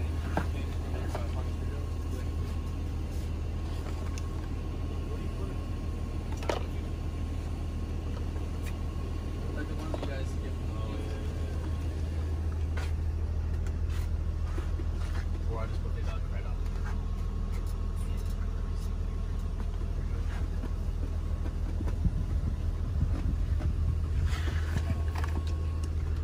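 Steady low drone of a running engine heard inside a tool truck, with a few short clicks and knocks scattered through it.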